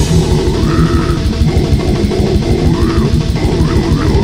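Brutal death metal from a 2001 demo recording: fast, dense drumming under distorted electric guitars, with a high guitar line that slides up near the start and bends up and down around three seconds in.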